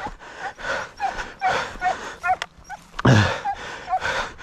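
Hare hounds yelping in short, repeated cries, about two a second, over a person's heavy breathing; a louder breath about three seconds in.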